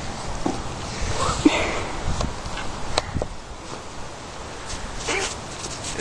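Corgi puppy sniffing and snuffling close by, with a few sharp clicks and rustles as she moves about.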